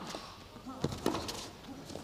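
Tennis rally on an indoor carpet court: the ball is struck by rackets and bounces on the carpet, with a couple of sharp knocks about a second in.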